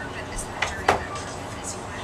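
Two sharp knocks about a third of a second apart, the second one louder, over a steady background hiss.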